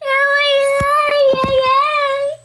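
A toddler crying in one long, sustained wail that wavers slightly in pitch, with a few low thumps near the middle.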